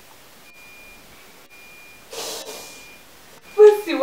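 A woman sobbing: a sharp, noisy breath about halfway through, then a loud crying voice breaks out near the end.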